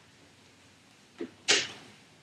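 A brief rustling swish about a second and a half in, just after a fainter soft sound, against quiet room tone.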